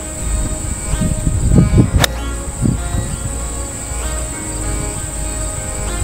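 An Air Force One AFX Pro 3-iron striking a golf ball on a full swing: one sharp crack about two seconds in.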